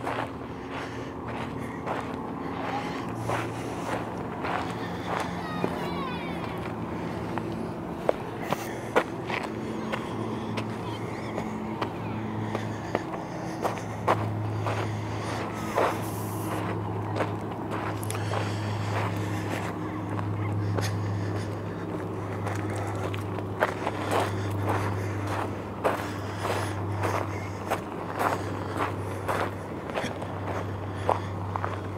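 Footsteps on a gritty concrete ramp and gravel, irregular scuffs and clicks. Underneath runs a steady low motor-like hum that grows stronger about halfway through.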